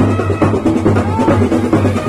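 A street brass band (bandset) playing: drums beat a steady, dense rhythm under trumpets.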